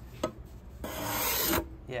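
Steel card scraper drawn along a hardwood cutting board's routed edge: a faint tick near the start, then a single scraping stroke just under a second long about a second in. The stroke peels off wood shavings as it cleans away router burn marks.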